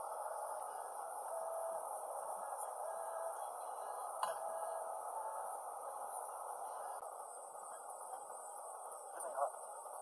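A steady, muffled hiss with a single faint clink about four seconds in, fitting a fork touching a small metal pot of noodles cooking on a portable gas stove.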